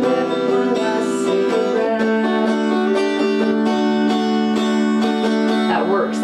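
Electric guitar strummed in a steady down-up rhythm, working through a D and D-suspended-fourth chord pattern, with the chord changing about two seconds in.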